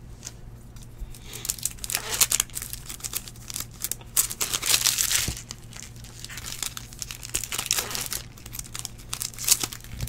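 Foil trading-card pack wrappers being torn open and crinkled by hand, in bouts of crackling, loudest about five seconds in. A steady low hum runs underneath.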